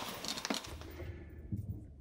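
A few faint clicks and light rustling as small parts and hardware bags are handled on a table, then a quiet room with a low hum.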